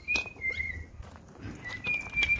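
Siberian husky whining in a thin, high, wavering note that breaks off and resumes while it is being fitted with a harness, with a sharp click near the start.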